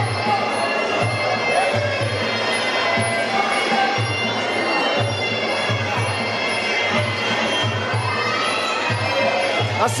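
Traditional Muay Thai fight music (sarama): a reedy, oboe-like pi java melody over a steady drum beat of about two beats a second, with crowd chatter under it.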